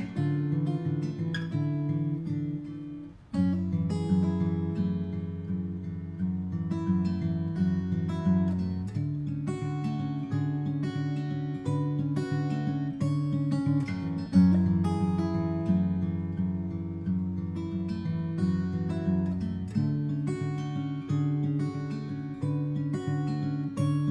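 Background music led by acoustic guitar, plucked and strummed, with a brief break about three seconds in.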